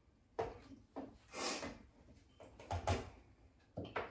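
Kitchen handling sounds from cookware and utensils at the stove and counter: a few short, separate knocks and clatters with a brief scrape about a third of the way in, the loudest knock near the end.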